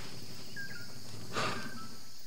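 Open-air wetland ambience: a steady high insect drone, with a few short thin bird whistles and a brief soft rustle about one and a half seconds in.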